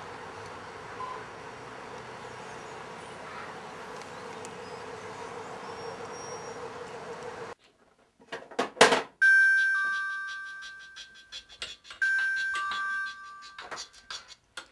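A flip phone ringing with a two-note chime, a higher note then a lower one, heard twice in the second half, with a sharp loud hit just before the first ring. The first half holds only a steady background hum.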